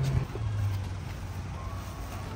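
A vehicle engine idling: a steady low hum.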